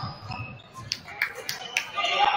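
A basketball being dribbled on a hardwood gym floor: four or five sharp bounces in the second half, about a quarter to a third of a second apart, over quieter crowd noise.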